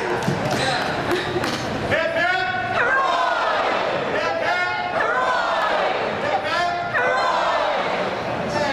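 People talking and laughing off the microphone, with a few sharp knocks.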